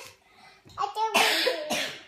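A toddler's voice: after a short pause, a brief voiced sound and then two loud, breathy, cough-like bursts.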